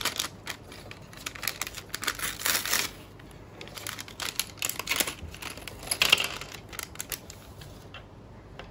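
Crinkly plastic blind-bag packet of toy bricks being handled and torn open, crackling in several irregular bursts.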